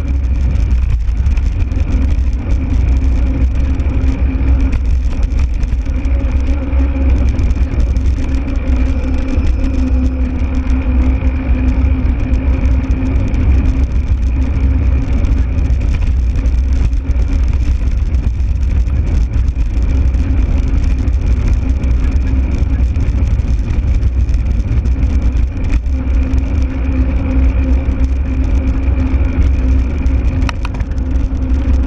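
Steady wind rumble on the microphone over a constant motor drone from a vehicle moving at an even speed along a road. A faint higher whine sits above the low hum.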